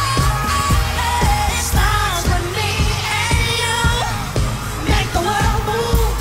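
Live pop song performance: singing over a dance track with a steady drum beat and deep bass.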